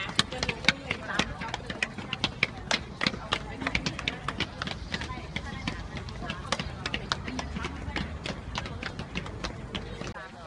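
Footsteps of a group of footballers jogging down concrete stairs: many quick, irregular shoe strikes overlapping one another, with voices chattering underneath.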